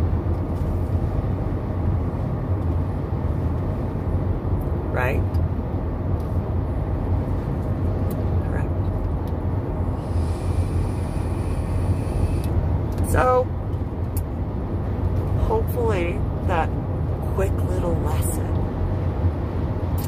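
Steady low rumble of a car in motion, heard inside the cabin. About ten seconds in, a faint hiss lasting a couple of seconds as a vape is drawn on, and a few brief pitched sounds scattered through.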